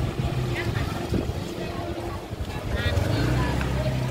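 Motor scooter engines running as two scooters ride slowly past close by, with scattered voices in the background. The engine hum grows louder about three seconds in.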